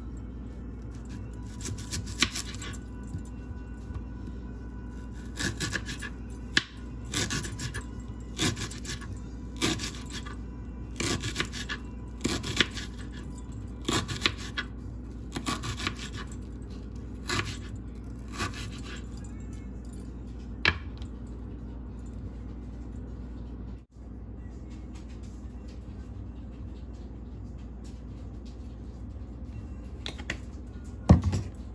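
Kitchen knife slicing through an onion and striking a plastic cutting board, a crisp stroke about every second, over background music. The strokes stop a little past two-thirds of the way through, leaving only the music.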